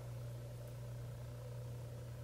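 Steady low hum over faint room tone, with no distinct event.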